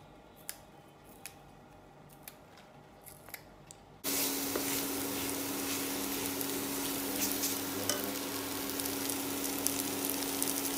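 A few faint clicks as leafy greens are torn apart by hand, then from about four seconds in, glass noodles and vegetables frying in a wok: a loud, steady sizzle with the clicks of a wooden spatula stirring, over a steady hum.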